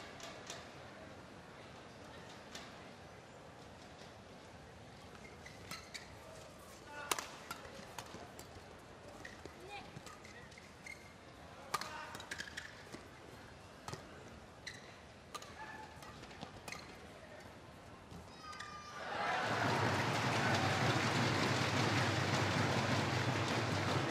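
A badminton rally: sharp racket strikes on the shuttlecock and squeaking court shoes over arena ambience. About nineteen seconds in, a loud crowd cheer breaks out as the point ends and carries on.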